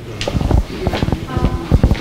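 Handheld microphone being handled as it is passed to the next speaker: a run of knocks and rubbing thumps picked up through the room's sound system, with faint voices in the room.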